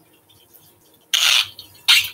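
A plastic bottle being handled, with a hand working at its cap: a short burst of noise about a second in, and a sharper click-like sound near the end.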